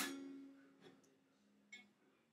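Electric guitar strings knocked by an iPod touch being slid under them: a sharp click, then a few string notes ringing and dying away over about a second and a half, with a faint small click near the end.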